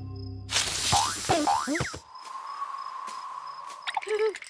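Cartoon soundtrack music and sound effects: a sudden burst of noise about half a second in, quick rising and falling pitch glides, then a single thin note held for the last two seconds.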